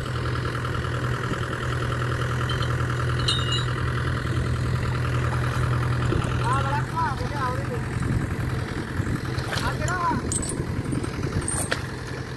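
Tractor diesel engine idling steadily. Voices call out briefly around the middle, and a few sharp clicks come near the end.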